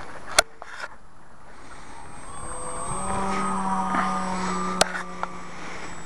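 Electric RC plane's brushless motor (RC Timer 1150kv with a 9x4 propeller) whining overhead. The whine rises in pitch and gets louder about halfway through, then holds a steady hum. A few sharp clicks cut in near the start and near the end.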